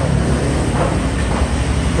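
Street traffic passing close by: motorbikes and cars, a steady low rumble.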